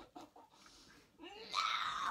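Faint rustling and knocks, then a girl's high-pitched laughter starting about a second in and loudest near the end.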